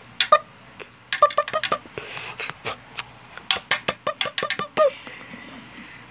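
Hands handling Lego bricks: an irregular run of small plastic clicks and taps in two flurries, stopping about a second before the end.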